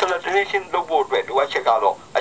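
Speech only: a narrator's voice talking without pause, sounding thin and tinny with no low end, as recorded narration played back through a loudspeaker.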